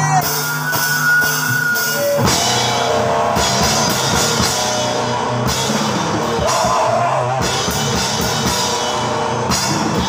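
A live rock band playing loud, heavy music on drum kit and electric guitar. Held, ringing guitar tones sound for about the first two seconds. Then drums and guitar come in together as a dense wall of sound that continues.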